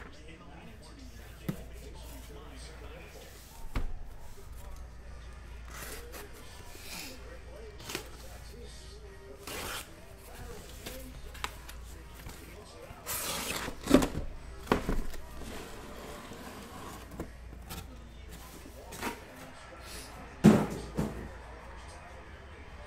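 Cardboard shipping case being opened by hand and the boxes inside handled: scattered knocks, scrapes and rustles of cardboard, the loudest knocks about two-thirds of the way through and near the end.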